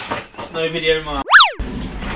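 A woman's voice, then about a second and a quarter in a short comic sound effect cuts in over the audio: a whistle tone that sweeps sharply up and straight back down, used in place of a swear word.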